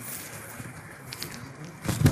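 Rustling and crackling from a clip-on microphone being handled and fitted to a jacket, with a loud knock on the microphone near the end.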